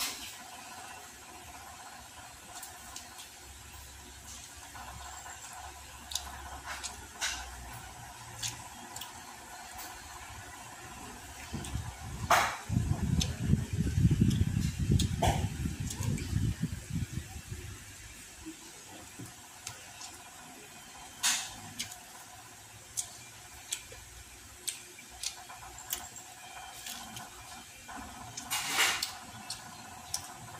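Close-up eating sounds of a man chewing crispy deep-fried pork belly (lechon kawali) with rice: scattered crunches and wet mouth clicks, with several seconds of loud, dense chewing about halfway through.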